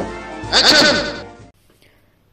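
End of a channel intro jingle: a sharp hit, then a short wavering flourish about half a second in that fades away, leaving near silence from about a second and a half in.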